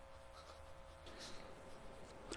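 Faint scratching of a gold broad fountain-pen nib writing on paper, in a few short strokes.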